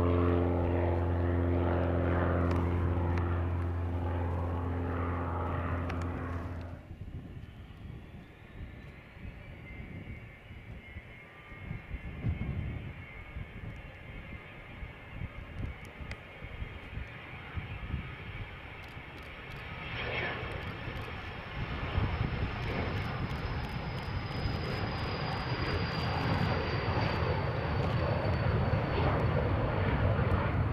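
For the first seven seconds, a single-engine light propeller aircraft climbs away with a steady propeller drone, which cuts off abruptly. Then comes a Learjet's twin jet engines: a high whine rises and holds, then sinks slowly as a jet roar builds louder from about twenty seconds in as the jet starts its takeoff roll.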